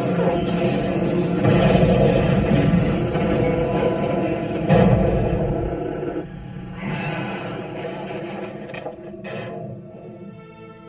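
Horror-film fight-scene soundtrack: dramatic score mixed with struggle sound effects, with one sharp hit about five seconds in. The mix fades over the last few seconds.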